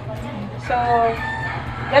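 A rooster crowing in the background, one long call beginning under a second in, beneath a woman's voice.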